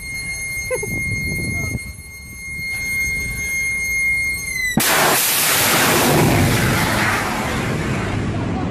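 A missile blasting out of a warship's deck vertical-launch cells: a sudden, loud roar of rocket exhaust starts about five seconds in and keeps going. Before it there is a steady high-pitched tone over a low rumble.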